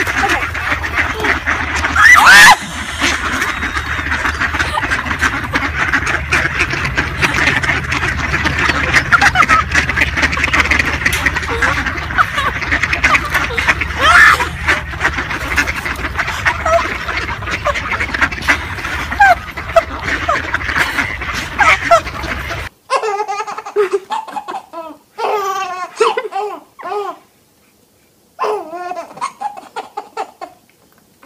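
A large flock of mallards quacking and calling continuously, with one louder call about two seconds in. After an abrupt cut near the end, a baby laughing in short bursts.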